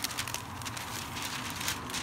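A sheet of wax paper rustling and crackling quietly as it is handled, a steady crinkly noise with fine clicks.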